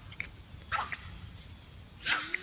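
A French bulldog giving short barks as it plays, the loudest a little under a second in, over a low rumble.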